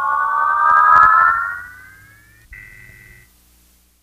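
Closing sustained keyboard chord of a progressive rock track: several steady tones glide upward in pitch together as they fade. About two and a half seconds in, a short high steady tone sounds for under a second, and then the music dies away.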